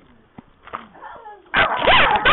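A dog gives a sudden loud yelp about one and a half seconds in, a cry that rises and falls in pitch.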